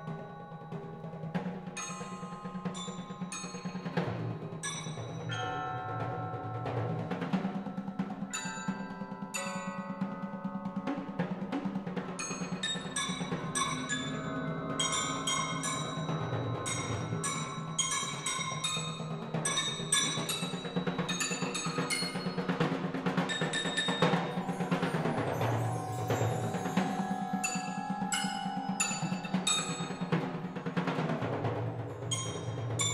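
Roto toms and a percussion quartet playing: pitched drum strokes and cymbals from the roto tom set, with bright ringing notes struck on mallet keyboard instruments over a steady low pitched drone. The struck notes come thicker and faster around the middle.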